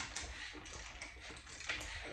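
A few faint, irregular clicks from a ratchet turning the crankshaft of a bare Honda K24 block by hand. The crank now turns over with the rod caps back in their proper order.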